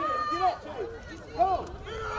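Several voices shouting short calls across a football field, overlapping, with one louder shout about one and a half seconds in.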